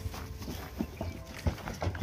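A small flock of sheep moving over the wooden plank floor of their pen and out onto the ground, their hooves making irregular knocks and clip-clop taps.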